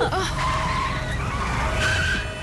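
Car engine rumbling and tyres skidding on a film soundtrack as a vintage car drives in fast over rough ground.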